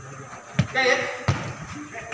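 Futsal ball being kicked: two sharp thumps, about half a second in and again just past a second.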